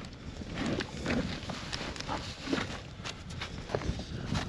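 Irregular crunches and knocks from a person moving about and shifting gear in wet snow and slush around a stuck snowmobile's sled.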